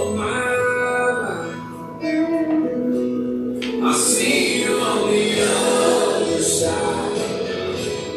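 A recorded song playing, a singer's long held notes over the accompaniment.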